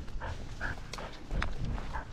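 Border collie panting close to the harness-mounted camera, short breaths about two or three a second, with a couple of sharp clicks and some low rumbling as it moves.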